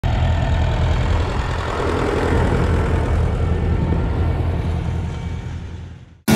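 An engine running steadily with a low rumble, fading out near the end.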